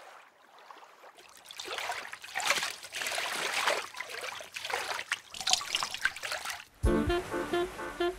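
A trickle of liquid splashing into water for several seconds: urinating into the sea. Near the end it cuts off and music with short, bouncy notes begins on a low hit.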